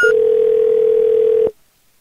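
Answering-machine tone heard over a phone line, the signal to start leaving a message. Just after a higher beep ends, a single steady tone sounds for about a second and a half, then cuts off suddenly, leaving faint line hiss.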